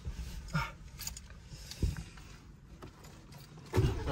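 A few light clicks and knocks in a quiet car cabin. Near the end, the Aston Martin DB11 Volante's twin-turbo V8 is started and fires up with a sudden loud burst.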